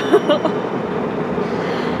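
Steady road and engine noise inside a moving car's cabin at highway speed, with brief laughter at the start.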